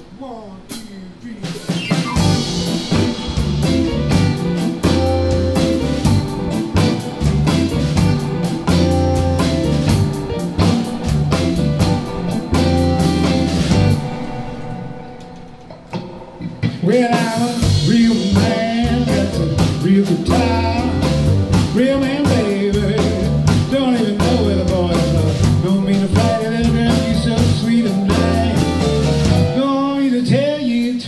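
Live blues-rock band playing, with electric guitar, bass and drum kit; the full band comes in about two seconds in, drops out briefly around the middle, then comes back with a man singing.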